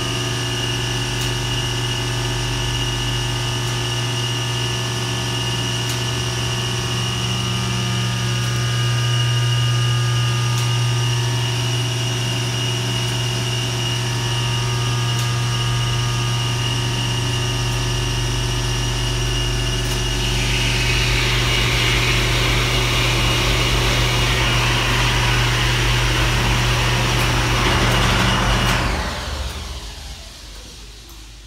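Dover hydraulic elevator power unit running: the electric motor and pump give a loud, steady hum with a whine over it. About two-thirds of the way through a hiss joins in, and then the unit shuts off suddenly shortly before the end.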